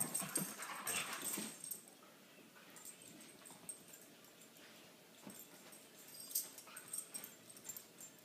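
Two dogs play-wrestling on a couch: scuffling and rustling of paws and fabric, busiest in the first second and a half, then only faint scattered scratches and clicks.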